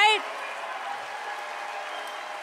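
A man's voice finishes a word at the very start, then an audience applauds steadily.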